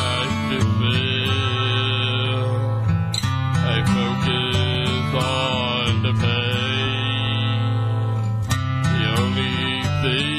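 A man singing a slow song into a handheld microphone over a karaoke backing track led by acoustic guitar.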